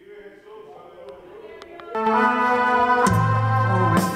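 Electronic keyboard playing an organ-voiced introduction to a worship song: soft sustained chords at first, swelling to a loud full chord about two seconds in, with low bass notes joining about a second later.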